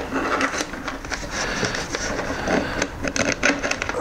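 Dashcam wiring cables pulled back through a motorcycle's front fairing: continuous scraping and rustling with small clicks as the wires and connectors rub past the plastic panels.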